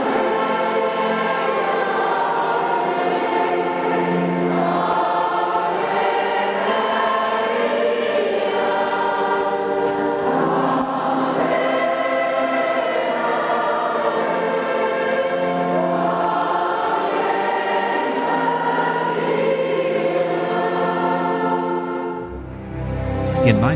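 A choir singing, several voices together holding long notes that shift every couple of seconds.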